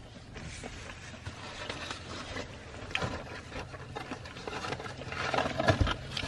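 Quiet chewing and mouth sounds of people eating fried chicken sandwiches, with small scattered clicks over a low steady hum, growing a little busier near the end.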